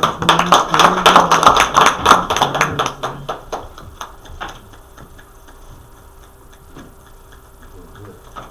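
A small audience clapping for about three seconds, then thinning out to a few last claps by about four seconds in.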